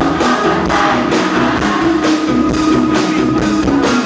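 Live pop band playing loud through a concert PA: a drum kit keeping a steady beat about three strokes a second, with electric guitar and bass.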